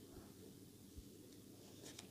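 Near silence with faint pen-on-paper writing, and one soft low bump about a second in.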